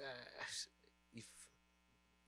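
Low steady electrical mains hum from the microphone system, under a man's hesitant 'uh' and a breath before 'if'.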